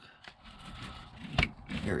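Faint rustling of a hand working among engine hoses, then a single sharp click about a second and a half in as a spark plug wire boot is pressed onto the spark plug. A man's voice follows near the end.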